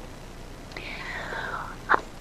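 A soft, airy breath lasting about a second, falling slightly in pitch, then a brief mouth click just before speech starts.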